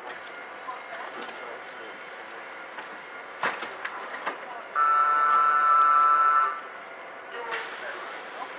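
Tyne and Wear Metrocar's door-closing warning tone sounds steadily for under two seconds, the loudest sound here, after scattered light clicks and knocks of a passenger boarding. Near the end a burst of hiss with a faint falling high whistle starts.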